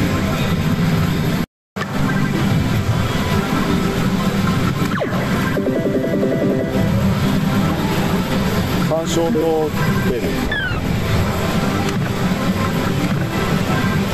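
Loud pachislot-parlour din: a dense, steady wash of many slot machines' music and electronic sound effects, cutting out for a moment about a second and a half in.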